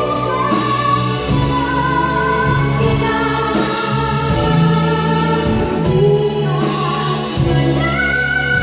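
A woman singing a sustained melody into a microphone, backed by a live band of electric guitar, keyboards and drums. The cymbals keep a steady beat about twice a second.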